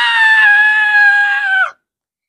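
A girl's long, high-pitched strained cry of 'Ah!', held on a nearly steady note that sinks slightly before it cuts off about a second and a half in. It is acted effort, a character straining to lift a heavy box.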